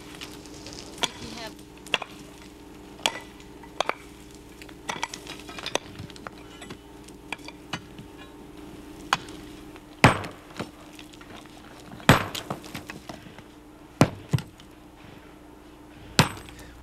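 Hand tools such as a pick mattock striking rock and packed soil: irregular clinks and thuds, with three heavier strikes in the second half. A steady low hum runs underneath and fades out near the end.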